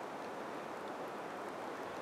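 Faint, steady background noise with no distinct events.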